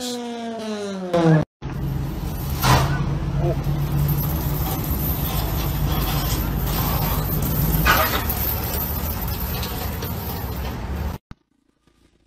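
A car engine behind an oversized exhaust pipe revving down, its note falling steadily in pitch for about a second and a half. After a cut comes a steady low engine drone of a vehicle running.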